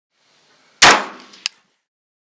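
A single loud rifle shot from a Sig Sauer 516 firing .223 ammunition, dying away over about half a second, followed by a shorter sharp metallic click.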